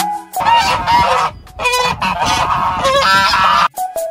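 Horse whinnying: a loud, high, quavering call in three stretches, the last and longest ending shortly before the music resumes.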